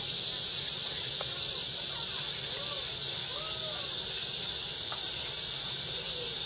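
Dense, steady high-pitched chorus of summer insects shrilling without a break. Faint short rising-and-falling calls or distant voices sound underneath it a second or so in.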